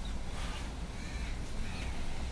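Crows cawing twice in the background, over a steady low rumble.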